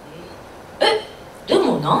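A pause in a woman's microphone speech, with low room tone, broken about a second in by one short, sharp vocal sound like a hiccup or gasp. A woman starts speaking again near the end.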